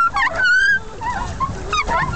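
A person's high-pitched wordless squeals: a few short cries that bend up and down in pitch in the first second, with weaker ones near the end.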